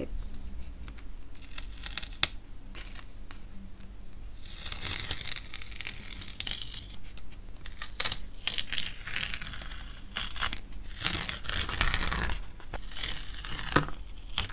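Masking tape being peeled off watercolour paper: several long ripping peels, each lasting one to two seconds, with small taps and paper rustles between them.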